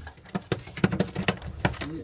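A run of irregular sharp clicks and taps, about a dozen over two seconds, with a pigeon faintly cooing low beneath them.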